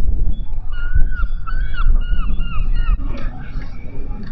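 A gull calling: a quick run of short, repeated calls lasting about two seconds, starting just before the first second. Wind buffets the microphone throughout as a low rumble.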